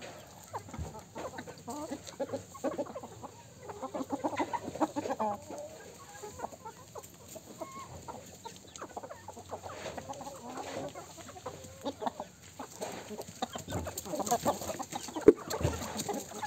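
A flock of chickens clucking while they feed, in many short, low calls that come in clusters. A single sharp tap near the end is the loudest sound.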